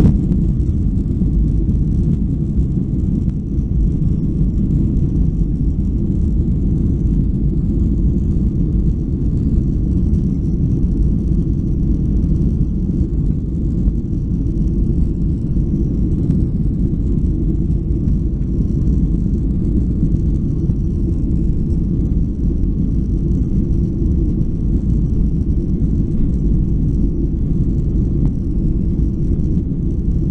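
Cabin noise from a window seat of a Boeing 737-800 moving on the ground: a loud, steady low rumble of its CFM56 engines and rolling gear, opening with a brief thump.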